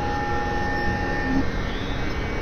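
Experimental synthesizer drone: a dense, noisy hum with a few thin steady tones laid over it. Two of the tones cut off about one and a half seconds in.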